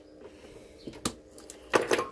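Hand cutters snipping through the solar cable leads to cut off the old MC4 connectors: a sharp snap about a second in, then a quick cluster of clicks near the end.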